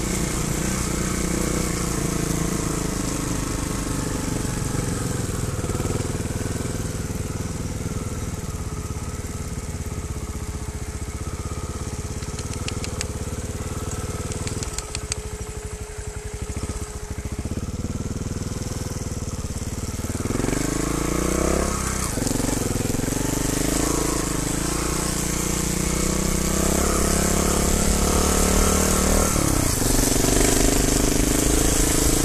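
Trial motorcycle engine running, its pitch rising and falling with the throttle: it eases off to a low running sound around the middle, then revs up sharply about two thirds of the way through and again near the end.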